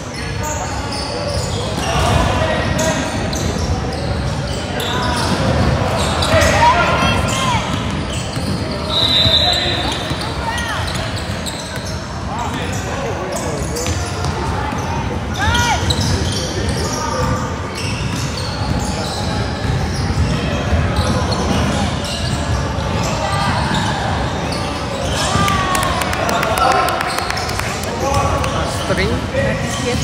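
Basketball game sounds echoing in a large gym: a ball dribbling on the hardwood floor and sneakers squeaking, over continuous background voices of players and spectators.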